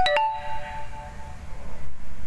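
A short metallic ding: two quick taps, then a ringing chord of several tones that fades over about a second and a half, over a low steady rumble.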